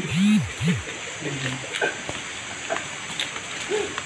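Brief, indistinct voices of people talking off-mic, two short sounds in the first second and then only scattered fragments, over low background noise.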